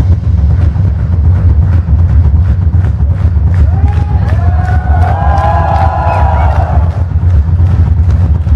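Live heavy-metal drum solo on a double-bass-drum kit: a dense, unbroken run of fast bass-drum strokes with drum and cymbal hits over it. From about halfway through, voices shouting and cheering rise over the drumming.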